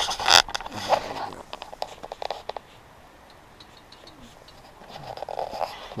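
Tent fabric rustling and scraping against the camera as it is pushed out through the tent door and brought back in. A cluster of sharp clicks and scrapes fills the first couple of seconds, then it goes quieter, with more rustling near the end.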